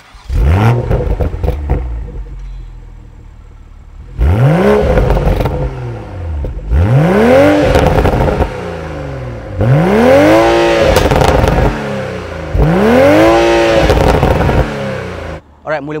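Toyota GR Supra's BMW B58 3.0-litre twin-scroll turbocharged inline-six, heard from behind at the exhaust. It starts with a quick flare and settles to idle, then is blipped four times. Each rev rises and falls in pitch, and the later revs go higher.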